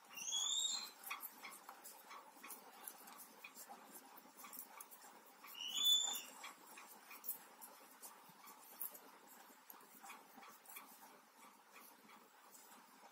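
Faint scattered ticking of metal knitting needles as stitches are worked, with two short high-pitched calls from an animal that rise in pitch: one just after the start and a louder one about six seconds in.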